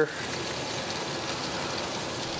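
Steady, even hiss from the open offset smoker as mop sauce is swabbed over the beef shoulder on the grate.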